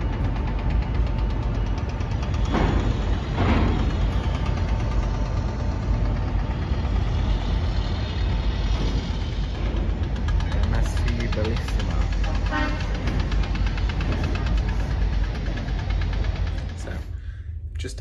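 Wind buffeting a phone microphone on an open upper deck: a loud, steady low rumble with a haze of outdoor noise. It cuts off about a second before the end.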